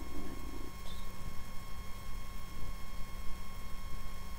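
Steady electrical hum and hiss of background noise, with a brief faint low sound in the first half-second and a small click about a second in.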